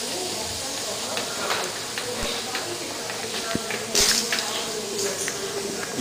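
Oxy-acetylene gas torch hissing steadily as gas flows from the tip, briefly louder about four seconds in.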